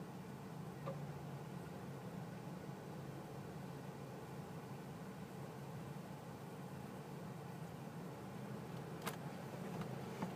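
Mazda RX-8's twin-rotor Wankel engine idling steadily, heard from inside the cabin as a low hum while waiting at the drag-strip start line. Two sharp clicks, a faint one about a second in and a louder one near the end.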